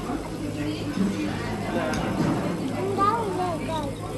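Voices talking, too unclear to make out words, over a steady low hum.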